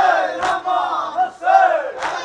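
Men's voices chanting a noha refrain together in chorus, with sharp slaps of matam (chest-beating) striking about half a second in and again near the end.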